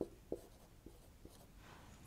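Marker pen writing on a whiteboard: a few short, faint strokes in the first second and a half.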